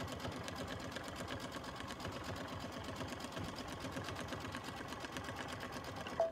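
Baby Lock embroidery machine running at reduced speed with a rapid, even stitching rhythm, sewing a tack-down stitch through thick layers of fabric, insulated lining and batting in the hoop.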